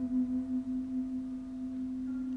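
A sustained low drone tone with fainter higher overtones, held steady with a slow wavering in level, as in sound-healing music.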